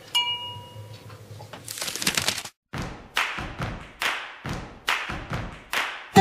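A single glass clink with a brief bell-like ring, then, after a short dropout, a run of whooshing transition sound effects rising and falling about every 0.7 s.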